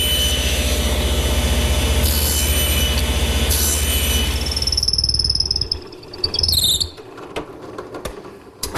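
Table saw nibbling a notch in a wooden chair leg, the blade taking repeated passes through the wood with a steady motor hum. About five seconds in the cutting noise stops, while a high whine and the hum carry on until about seven seconds in, then fall quiet.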